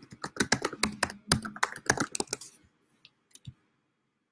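Typing on a computer keyboard: a quick run of keystrokes for about two and a half seconds, then a few scattered clicks.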